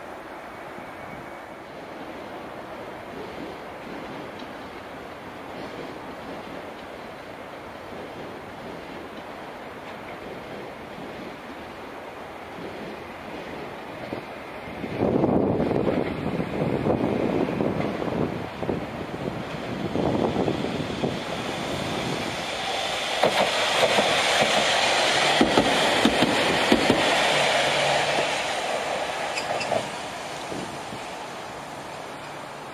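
A Chikuho Electric Railroad 3000-series articulated tram approaches and passes close by on the track, its running noise growing louder through the second half. It peaks with a few sharp clicks from the wheels on the rails, then drops away near the end.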